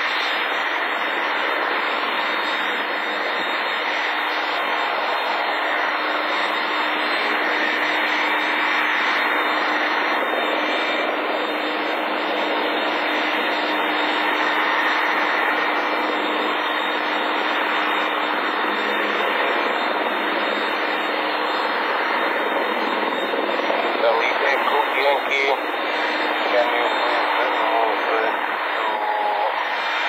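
Steady rush of aircraft engine noise heard through a narrow-band radio channel, with a steady low hum that drops out about two-thirds of the way through. Speech-like sounds come in near the end.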